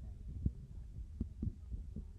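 Low rumble of a car moving slowly, heard from inside the cabin, with a few irregular soft thumps.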